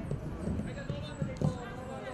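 Footballs being kicked in a passing drill: dull thuds of boots striking the balls, one at the very start and another about one and a half seconds in.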